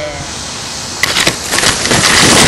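Leafy branches brushing and crackling right against the microphone. It begins about a second in as a run of sharp rustles and builds into a loud, continuous rustle.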